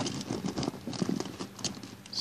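Small plastic Littlest Pet Shop figures clicking and rattling against each other as they are rummaged through by hand, a run of irregular light clicks.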